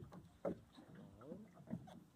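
Mostly quiet, with a faint voice about halfway through and a couple of brief soft sounds before and after it.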